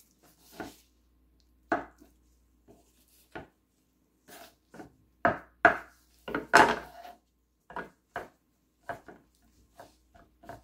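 Kitchen knife chopping avocado on a wooden cutting board: about fifteen irregular knocks of the blade on the board, the loudest bunched in the middle.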